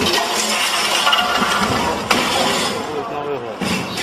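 A small white refrigerator crashing down concrete steps, with one loud bang about two seconds in and the clink of its spilled contents breaking, over people's shouting voices.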